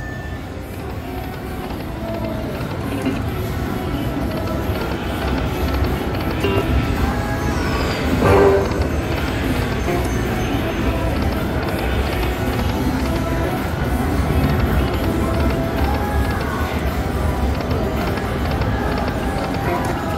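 Buffalo Chief slot machine playing its game music and reel-spin sounds through repeated spins, with a brief louder sound about eight seconds in.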